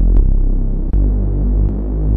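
Reese bass from the Serum software synth: detuned unison saw voices layered with a sine under a driven low-pass filter, giving a throbbing, phasing low tone. The note changes about a second in.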